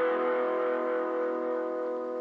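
Guitar chord ringing out and slowly fading away as the song ends.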